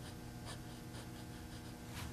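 Faint scratching of a drawing tool on paper: a few short strokes, darkening drawn lines.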